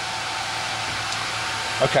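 Laser cutter switched on and idling, its fans giving a steady whirring noise with a faint even tone.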